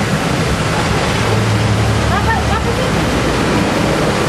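Loud steady rushing noise with people's voices faint underneath.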